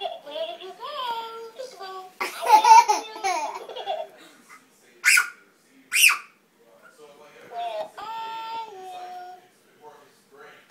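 Toddlers laughing and squealing, with two short, sharp bursts of laughter about a second apart halfway through and a long drawn-out vocal near the end.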